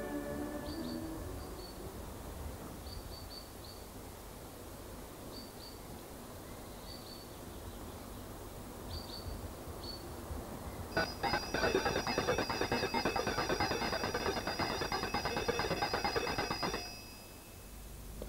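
Organ music fades out, then faint short bird chirps over quiet background. About eleven seconds in, an electric bell starts ringing continuously for about six seconds and then stops abruptly.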